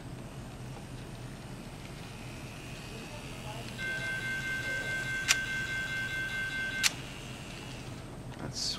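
Electronic crossing-bell sound from the Kato N-scale automatic crossing gate's built-in speaker, set to one of its alternate US-prototype sound options: a bright steady tone pulsing regularly, triggered by the locomotive crossing the sensor track. It starts about four seconds in, with a sharp click midway, and cuts off with another click about a second before the end.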